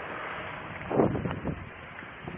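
Wind buffeting a body-worn microphone, with a few short rustles and bumps of clothing and handling as the wearer walks, the loudest about a second in.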